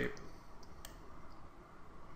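A few faint computer mouse clicks over low room hiss, the sharpest about halfway through.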